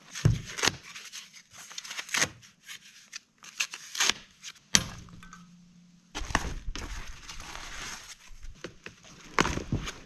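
Handling noise from unpacking an e-bike: scattered knocks and clicks of bike parts and cardboard, with one sharp knock a little before halfway. After about six seconds comes a longer stretch of rustling and scuffing from the packing material.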